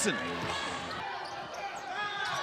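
Basketball game sound on a hardwood court: steady low crowd noise in the arena with the ball bouncing on the floor.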